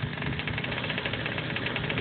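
A quarter-scale RC drag car's engine running steadily at idle, with a fast, even rattle.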